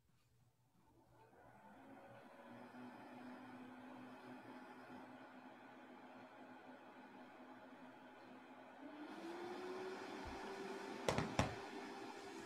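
A faint, steady machine whir with a hum that fades in over the first two seconds and glides up to a higher pitch about nine seconds in. Two sharp clicks come about a second before the end.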